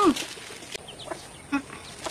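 Chickens clucking: a few short clucks and chirps, spaced apart through the middle of a quiet stretch.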